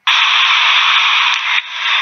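A loud burst of hiss like static, starting abruptly and easing off a little near the end.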